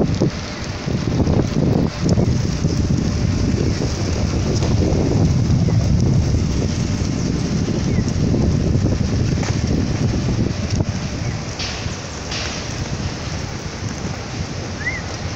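Wind buffeting a handheld camera's microphone in an open city square, a rumbling, gusty noise that rises and falls. Two short hissy bursts come a little before the end.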